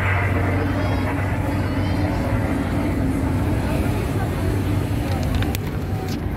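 Busy street ambience: a steady low rumble of traffic with scattered pedestrian voices in the background and a few short clicks near the end.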